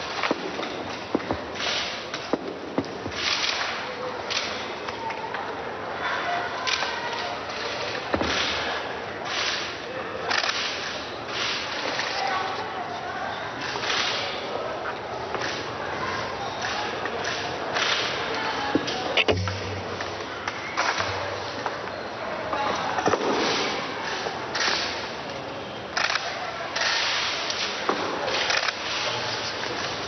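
Press photographers' camera shutters clicking irregularly, many times, over a steady low murmur of voices.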